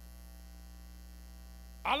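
Steady low electrical hum, a mains hum in the microphone and sound system, with no other sound until a man starts speaking just before the end.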